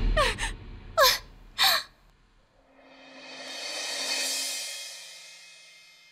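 A woman's three short cries of pain, each falling in pitch, over a low dramatic music hit. Then a cymbal-like whoosh swells up and fades away over the last few seconds.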